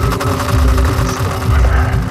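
Techno from a DJ mix: a steady kick drum beat under fast hi-hat ticks and a held synth chord.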